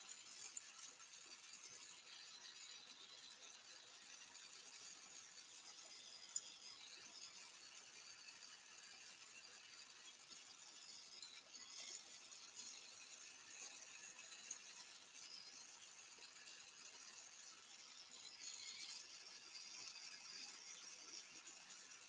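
Near silence: the faint steady hiss of a glassworking bench torch's flame, with a few faint clicks.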